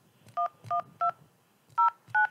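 Telephone keypad touch-tones (DTMF): four short two-tone beeps, three in quick succession and a fourth after a brief pause, dialling the digits 1, 1, 2, 0 of a zip code in answer to an automated phone menu's prompt.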